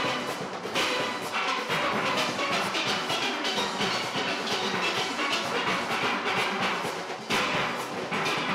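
A full steel orchestra playing: many steel pans struck together in a dense, driving run of notes, with loud ensemble accents at the start, about a second in and again near the end.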